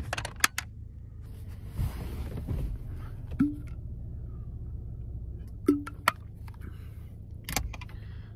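Objects handled inside a car: a plastic shaker bottle set into place and the camera picked up and adjusted, giving a scattering of sharp clicks and knocks with some rustling, over a steady low hum.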